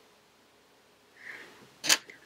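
A woman's breathing: a faint soft breath about a second in, then a short, sharp breath or sniff just before she speaks again.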